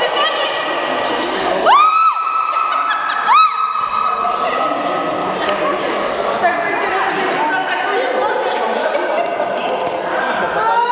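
Voices and chatter echoing in a large sports hall, with several high-pitched squeals that rise and fall. The loudest squeal comes about two seconds in, and another about three and a half seconds in.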